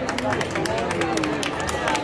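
Crowd chatter from a throng of people walking past on a stone street, with many short, sharp clicks scattered throughout.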